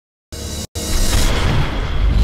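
Intro sound effect over music: after a moment of silence comes a short burst, a split-second break, then a loud boom with a deep rumble and hiss that carries on.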